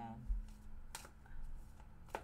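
Tarot cards being handled on a table: one sharp tap of a card about a second in, with faint rustling after it.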